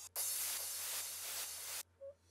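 Crash cymbal sample previewed from a music program's sample browser: a bright cymbal wash that starts suddenly, holds at an even level, and is cut off abruptly after about a second and a half when the next sample is selected.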